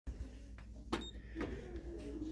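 A lift call button being pressed: a few light clicks, the loudest about a second in followed by a brief high beep, over a steady low hum.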